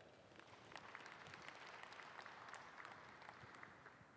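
Faint, scattered hand-clapping from a small crowd in a large arena, dying away near the end.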